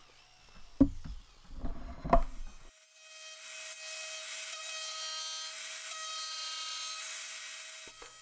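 A jigsaw cutting wood, low and uneven with a couple of sharp knocks, for the first two and a half seconds. Then a router with a flush trim bit runs as a steady high-pitched whine, trimming the rough-cut round recess in the cherry bench top to its template.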